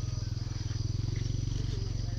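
A steady low engine drone with a rapid, even pulse, running close to the microphone, with faint voices in the background.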